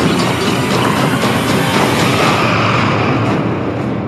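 Horror movie trailer soundtrack: a loud, dense wash of sound-design noise with a fine clattering texture, easing off slightly near the end.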